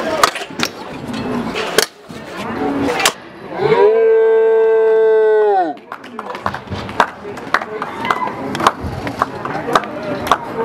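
Stunt scooter clacking and knocking on concrete and stone ledges during street riding. Near the middle someone lets out one long, held call that rises in, holds a steady note for about two seconds and falls away.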